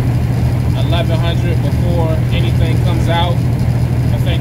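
Steady low drone of a semi truck's engine and road noise heard inside the cab at highway speed, with a man's voice talking over it.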